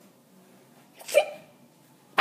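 A single short vocal sound from a person's voice about a second in, brief and rising in pitch, with near quiet around it.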